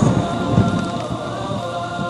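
Television channel ident music: a deep rumble, like thunder, that eases after about a second, under a sustained held chord.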